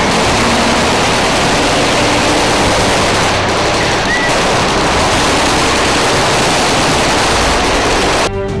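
A loud, even rush of noise with no tune or beat, starting abruptly.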